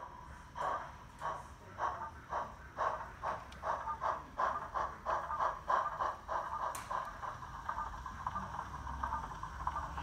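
Steam exhaust chuffs from the Zimo MX648R sound decoder and small 20×20×10 mm speaker in an O gauge Peckett saddle tank model, playing Digitrains' Peckett sound file. The chuffs come about two a second at first and quicken as the loco picks up speed, running together near the end. A single sharp click comes about seven seconds in.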